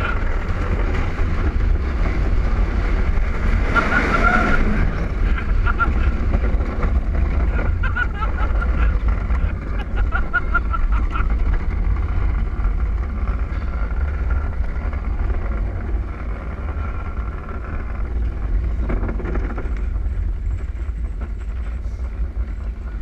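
Wheels of a gravity luge cart rolling fast over a concrete track, a steady rumble mixed with wind buffeting the microphone; the rumble eases a little near the end as the cart slows.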